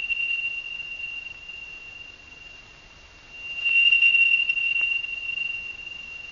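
A single steady high-pitched tone that fades, then swells louder again about three and a half seconds in.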